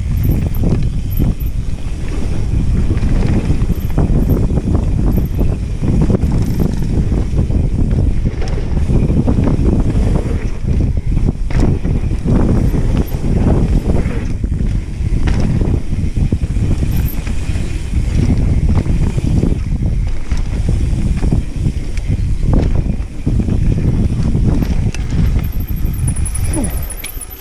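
Mountain bike ridden fast over a dirt-jump trail: a steady low rumble of tyres on dirt and wind buffeting the camera microphone, with frequent knocks and rattles from the bike over bumps and landings.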